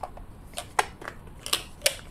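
Several sharp, irregular clicks and taps from the parts of a 3D-printed plastic flashlight being handled and pulled apart.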